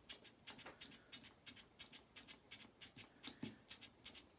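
Faint, rapid clicking of an airless pump bottle of aftershave balm being pressed over and over, about five or six clicks a second, without dispensing; the owner thinks the pump is clogged.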